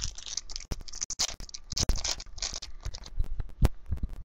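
Foil wrapper of a baseball card pack crinkling and tearing as it is ripped open by hand: a run of crackly rustles with a few sharp clicks.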